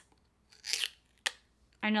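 Teeth tearing the plastic seal off a bottle of castile soap: a short scrape about half a second in, then a sharp snap a little over a second in as it comes free.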